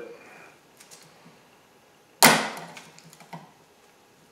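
Snap ring pliers working a spring clip on a steering shaft's rubber boot: a few faint ticks, then a single loud, sharp metallic snap that rings briefly, followed by a smaller click about a second later.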